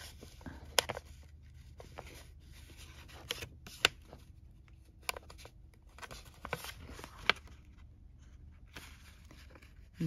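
Fingers handling paper envelopes, with soft rustling and a few sharp small clicks scattered through, as the legs of a metal mini brad fastener are pressed open by touch.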